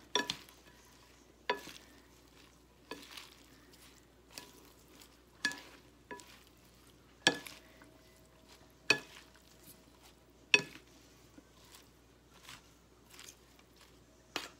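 Wooden salad servers tossing a salad in a bowl: sharp clacks against the bowl about every second and a half, with soft rustling of the leaves between.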